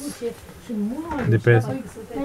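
Speech only: Romanian voices talking, including a drawn-out, sliding vocal sound in the middle and a short word near the end.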